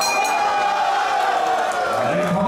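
A ringside bell struck once at the start, ringing briefly, over a crowd of spectators shouting: the signal ending a kickboxing round.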